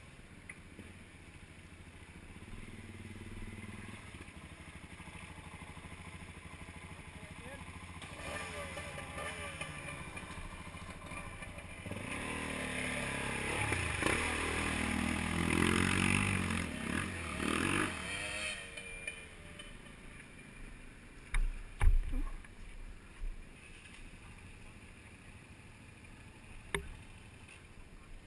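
Trail motorcycle engines revving as a bike rides through a deep ford, with water splashing, loudest in the middle. A few sharp thumps follow near the end.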